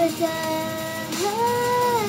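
A young girl singing a pop song, holding long notes: one sustained note, then a slide up about a second in to a higher note that she holds.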